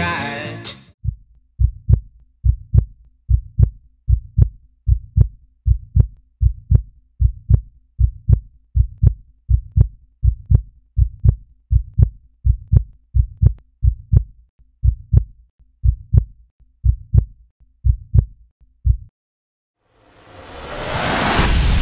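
A heartbeat: paired low thumps, lub-dub, about one beat every 0.8 seconds, keeping a steady pace and stopping shortly before the end. The song that comes before it fades out in the first second.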